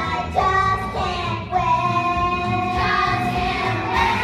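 A children's chorus singing together over musical accompaniment, holding long notes with a steady bass beneath.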